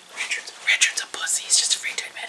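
A person whispering in short, breathy spurts.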